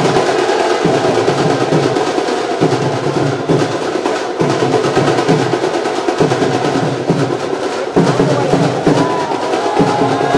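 Music carried by loud, steady drumming in a fast, even rhythm.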